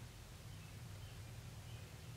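Faint scratching of a pen writing on a paper sticker, a few light strokes over a steady low hum.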